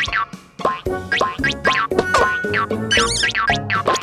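Playful children's cartoon music with springy boing sound effects: many short notes with quick upward and downward pitch slides, and a warbling trill about three seconds in.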